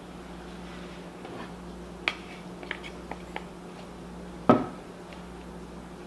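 Kitchen utensils clinking and tapping against a glass mixing bowl: a sharp click about two seconds in, a few light ticks after it, and a louder knock with a short ring about four and a half seconds in, over a steady low hum.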